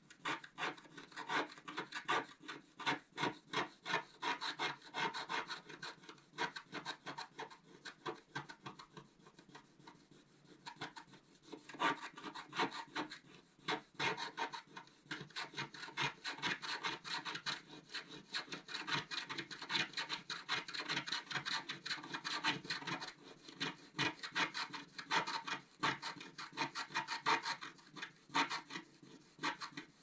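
Wooden stylus scratching the black coating off a scratch-art sheet in quick, short, repeated strokes, with a pause of a couple of seconds about a third of the way in.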